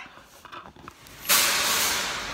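Loud, steady rushing hiss of air noise that starts abruptly a little over a second in, after a quiet stretch, then eases slightly.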